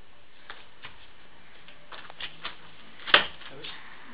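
Light scuffs and taps of feet as two people circle on a foam mat, with one sharp, much louder smack about three seconds in.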